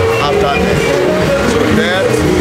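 A man speaking, over a steady low background hum.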